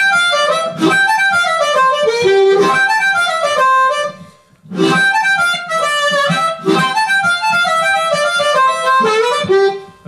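Blues harmonica played solo, cupped in the hands: fast runs of triplets over a medium shuffle, cascading downward in two phrases with a brief break about four seconds in.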